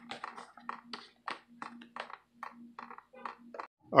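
Antifreeze dripping from a loosened radiator drain plug, the drops landing in quick, irregular ticks about four or five a second, with a faint low hum behind them.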